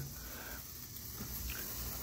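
Faint, steady fizzing hiss of a lit ten-inch wire sparkler burning.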